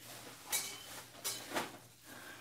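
A few short knocks and rustles, about three, of haul items being handled and set down while reaching for the next one.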